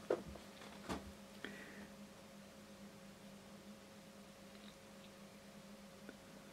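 Two sharp clicks and a fainter one in the first second and a half as things are handled on a workbench, then a faint steady hum.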